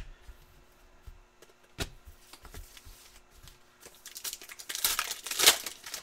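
Plastic foil wrapper of a trading-card pack being crinkled and torn open, the tearing loudest near the end. A couple of sharp clicks come first.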